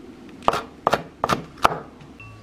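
Kitchen knife chopping hot chili peppers and green onion on a wooden cutting board: several sharp knocks of the blade on the board in quick, uneven succession.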